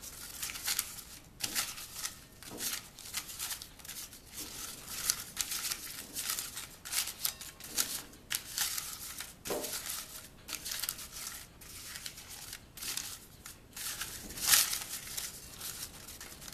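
Folded index-card slips rustling and sliding against each other as a hand shuffles them in a glass bowl, with a run of irregular, crisp rustles.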